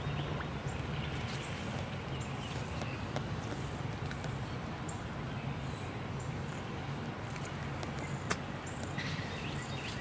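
Steady low outdoor background hum with a few faint bird chirps near the end and a single sharp click about eight seconds in.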